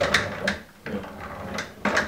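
Casters under a Fender Super 210 tube combo amp rolling back and forth across a tiled floor: an uneven rolling rumble with a few knocks, a pair of the sharpest near the end.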